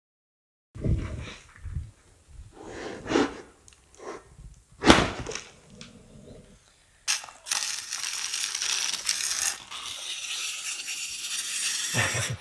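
A wooden sand-mould flask knocked and pulled apart in a few separate thumps and scrapes, the loudest about five seconds in. From about seven seconds a brush sweeps loose green sand off the newly cast aluminium plate: a steady, scratchy rustle.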